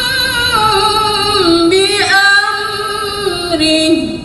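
A woman reciting the Quran in melodic tilawah style, holding one long ornamented phrase. Its pitch steps down gradually, with a quick rise and fall about two seconds in, and the phrase ends near the end.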